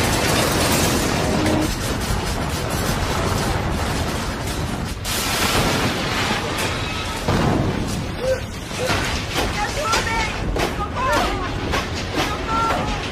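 Loud, continuous rumbling and crashing of an underground collapse with falling debris, a disaster-film sound effect, with short voice sounds near the end.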